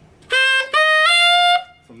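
Tenor saxophone playing three rising notes at the top of the G blues scale, climbing from D into the altissimo register. The last and highest note, the altissimo G, is held about half a second.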